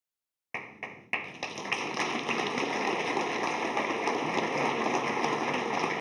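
Audience applause: a few single claps about half a second in, quickly building into steady clapping from many hands.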